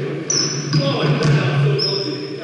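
A basketball bouncing on a hardwood gym floor during a pickup game, with sneakers squeaking twice, in a large echoing gym over a steady low hum.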